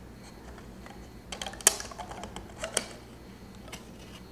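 Light clicks and taps of small plywood pieces being handled as an elastic band is stretched around them, with one sharper click a little past a second and a half in, over a faint steady hum.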